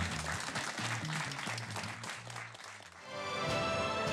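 Studio audience applauding over music with a low bass line. About three seconds in, the applause gives way to music with held chords.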